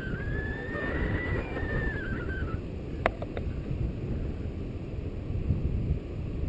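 Wind buffeting the microphone of an action camera on a paraglider in flight, a steady low rumble. A faint high tone rises and falls over the first couple of seconds, and there is a single sharp click about three seconds in.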